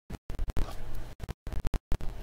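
A trading card being handled and slid into a clear plastic sleeve: a scratchy rustle of card against plastic, broken by several abrupt dropouts where the audio cuts out completely.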